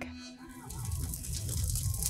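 Film sound effect of a fiery blast: a low rumbling rush with a hissing top that starts about half a second in and grows louder.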